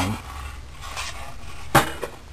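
A single sharp knock of hard objects being handled, about three-quarters of the way in, over a low steady room hum.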